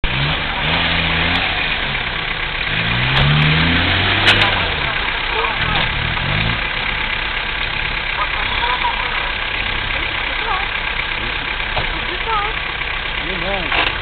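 Off-road 4x4's engine revving up and down in several bursts over the first few seconds, then running more steadily, with a few sharp knocks in between.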